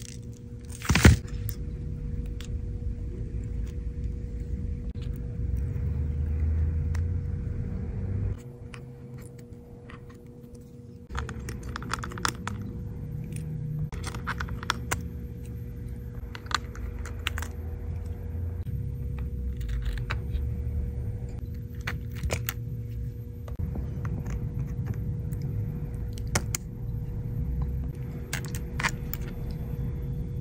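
Scattered small metallic clicks and taps of tools and parts against an opened iPhone's frame as its internals and logic board are handled, over a steady low hum with a faint steady tone. The loudest click comes about a second in, and the hum drops away for a few seconds in the middle.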